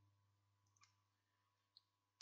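Near silence: faint steady room hum with two faint, short clicks about a second apart.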